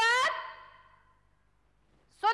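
A short comic sound-effect sting: one horn-like note with a bright ring of overtones that slides up in pitch and dies away within about a second.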